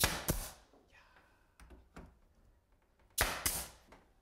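Pneumatic brad nailer firing brads into an oak wall cap: two quick shots a fraction of a second apart at the start, then two more about three seconds in.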